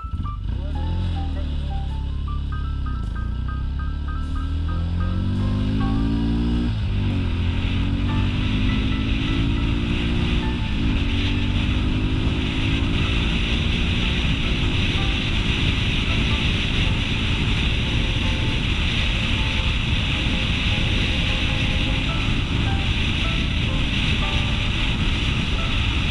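Sport motorcycle engine pulling away and accelerating, climbing in pitch and dropping back at each of several upshifts, then settling into a steady cruise. Wind rush grows as the speed builds, over light background music.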